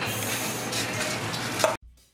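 Whisk stirring freshly added grated carrot into beaten eggs in a stainless steel bowl, a steady scraping noise that cuts off suddenly near the end.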